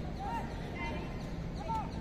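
Open-air football-match ambience: a few short, distant shouts from the pitch over a steady low background rumble.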